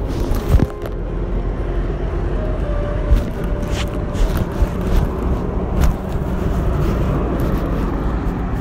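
Steady low rumble of road traffic, with a few short knocks and rustles of handling close by.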